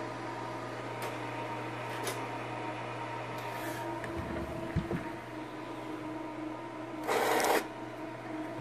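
Pen plotter plotting a spectrum-analyzer trace sent over HP-IB: a steady hum with a few sharp clicks and soft thumps, then a short loud rushing burst about seven seconds in.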